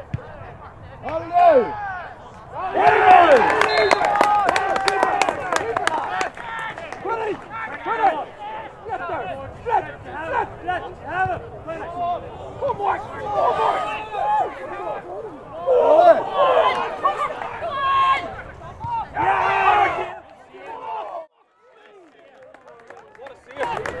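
Touchline shouting at a Gaelic football match: several men's voices calling out and urging on players, overlapping, with a short lull near the end.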